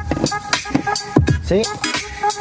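Copyright-free electronic music playing from a phone through a car's factory FM radio by way of a Bluetooth FM transmitter: a beat of deep, falling kick drums and hi-hats over steady synth tones.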